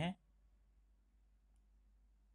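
Near silence: faint room tone, with a single faint click about one and a half seconds in.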